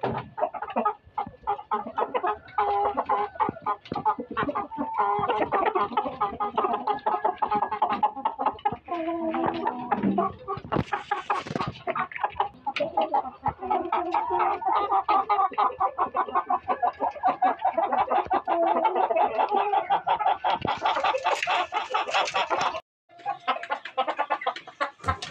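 A flock of chickens clucking continuously, many short calls overlapping. The sound briefly cuts out near the end.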